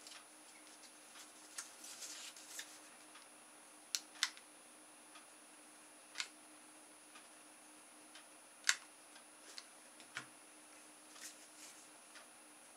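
Scattered light clicks and taps from handling a plastic drinking straw, a piece of cardboard and a hot glue gun on a tabletop, irregular and quiet, the sharpest a little after four seconds and again near nine seconds, over a faint steady hum.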